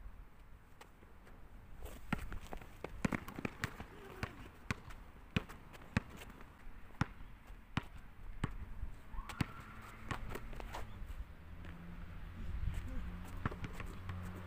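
Basketball bouncing on an outdoor hard court during one-on-one play, in a run of sharp, irregular bounces with shoe steps; the bounces come thickest in the first half and thin out later.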